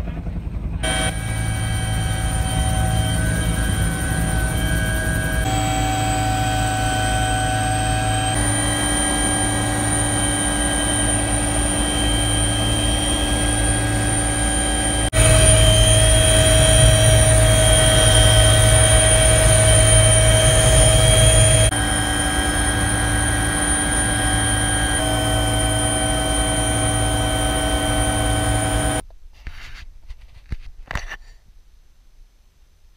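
Helicopter running close by: a steady turbine whine over rotor rumble, in several short stretches joined by abrupt cuts. From about 15 to 22 seconds it is loudest, heard from inside the cabin. It cuts off about a second before the end.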